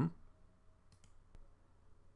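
Two faint computer mouse clicks about half a second apart, about a second in, opening a dropdown list in a software window.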